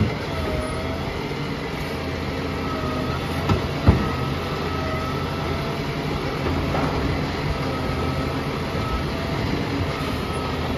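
Volvo side-loader garbage truck running at the kerb, its diesel engine steady under a hydraulic whine that rises and fades as the automated arm lifts, tips and lowers a wheelie bin. Two sharp clunks about three and a half and four seconds in, the second the loudest sound.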